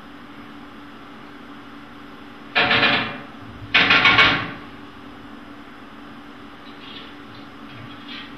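Two short bouts of rapid knocking on a glass window pane, about a second apart, each lasting about half a second, over a steady low hum. It is a film soundtrack played through cinema loudspeakers in a hall.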